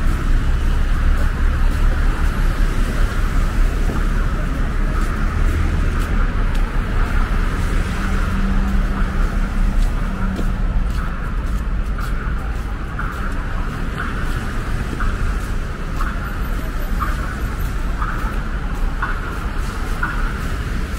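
Steady road traffic on a wide multi-lane avenue: a continuous wash of passing cars and buses with a low rumble. In the second half, faint ticks come about once a second.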